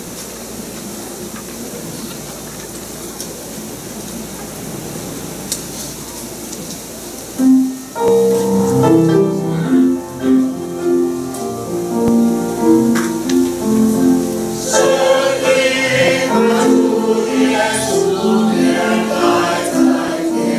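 Mixed church choir of men and women singing a hymn under a conductor: soft for the first seven seconds or so, then much louder, in several voices at once.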